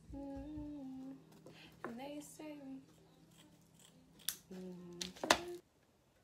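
A woman humming a tune in a few short held notes, then near the end two sharp snips of scissors cutting a strip of plaster bandage, the second the loudest.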